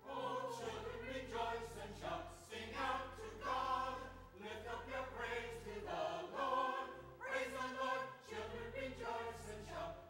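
A mixed church choir sings an anthem, coming in right at the start, over held, sustained low notes from an instrumental accompaniment.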